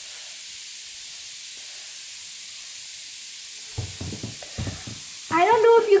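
A bath-bomb-style fizzy ball dissolving in a bowl of water, giving a steady fizzing hiss. A few soft knocks come in during the second half.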